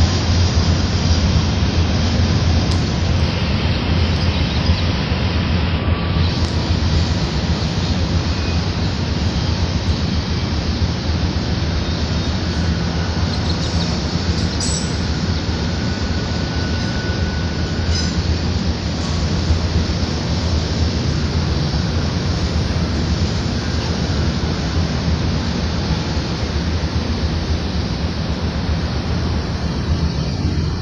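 Freight train's cars rolling past behind its locomotives, a steady continuous rumble of steel wheels on the rails.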